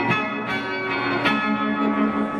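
Acoustic guitar played solo, plucked notes ringing out and overlapping, a new one struck every half second or so.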